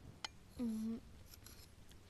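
A metal serving ladle clinks once sharply against a ceramic bowl while food is served, then a few fainter light clinks follow. About halfway through, a brief hummed "mm" is heard.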